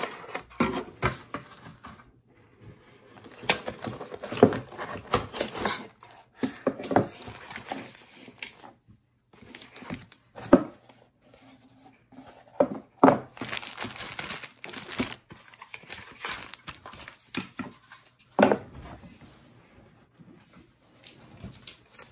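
Cardboard packaging and plastic bags being handled during an unboxing: irregular rustling and crinkling with light knocks and scrapes of cardboard.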